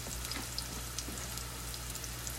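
Ribeye steak searing in hot oil in a nonstick frying pan: a steady sizzle with faint scattered crackles.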